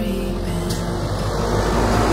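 Tractor engine approaching and growing louder, with soft music underneath.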